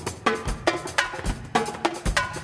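Drum kit and Latin percussion playing a samba groove together: pitched metal bell strikes ringing briefly over busy drum hits, with kick-drum thumps about every half second.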